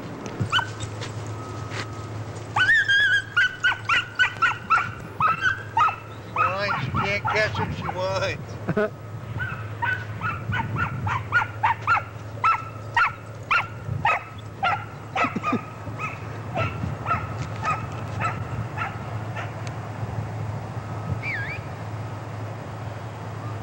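A dog barking in quick, high yips, several a second, starting about three seconds in and easing off about sixteen seconds in, over a steady low hum.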